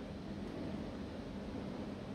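Quiet, steady background noise of a room, a low even hiss with a faint hum and nothing happening.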